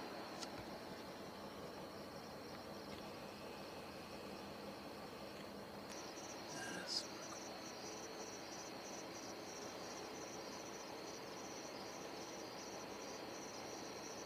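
Crickets chirping faintly in the night air: a steady high trill throughout, joined about six seconds in by a second insect pulsing a few times a second.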